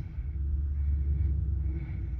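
A steady low rumble, with a faint high tone pulsing on and off a few times.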